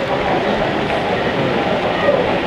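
HO-scale model freight train running along the layout track, a steady running noise from the locomotive and the long string of freight cars rolling over the rails.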